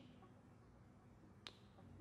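Near silence: faint room tone, broken by a single short click about one and a half seconds in.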